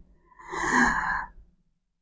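A man's audible breath, a single soft breathy rush lasting about a second, taken in a pause in his speech.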